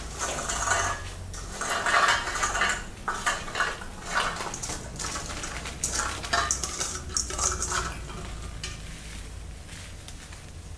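Peeled garlic cloves poured out of a perforated stainless steel colander, rattling against the metal and clattering onto a paper-towel-covered countertop. The clatter runs in uneven surges and thins out after about eight seconds, leaving a low steady hum.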